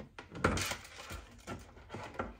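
Handling noise of a portable monitor and its USB-C cable: a few light clicks and a short rustle, loudest about half a second in.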